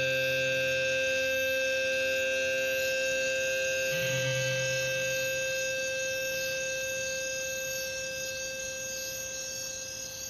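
A steady drone of several held tones, slowly fading, with a deeper note that drops out about a second in and comes back briefly around four seconds. This is the closing outro at the end of the album's last track.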